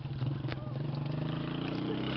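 A small motorcycle engine on a motorcycle-with-sidecar tricycle, running steadily; its pitch rises slightly about halfway through.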